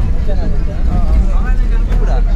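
Low, steady rumble of a bus engine and road noise heard inside the passenger cabin, with faint passenger chatter over it.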